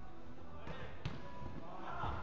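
A football struck once, a sharp thud about a second in, with players' voices in the background.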